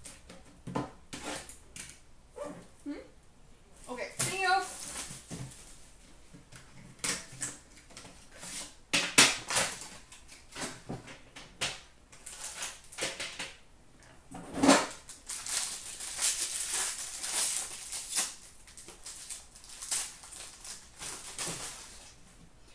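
Cardboard packaging and trading cards being handled: irregular taps, clicks and sliding scrapes as a card box is opened and the cards are pulled out and sorted, with a longer run of rubbing and sliding in the second half.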